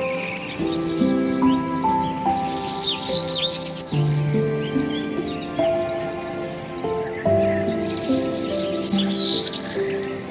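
Slow, gentle instrumental background music of held notes, with bird chirps mixed into it, bunched about three seconds in and again near the end.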